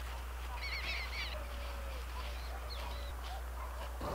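Birds calling faintly: a quick run of about six rapid, repeated chirps about half a second in, then a few scattered single calls, over a low steady rumble.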